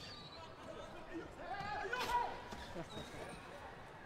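Basketball dribbled on a hardwood court with the hubbub of an indoor arena, and a voice calling out about two seconds in.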